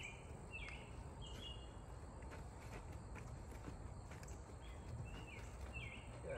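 Faint, soft hoof steps of a Gypsy horse mare on a dirt arena as she steps her forequarters around. Over them a short, high chirping call repeats about twice a second, in the first second and again near the end, above a steady low outdoor rumble.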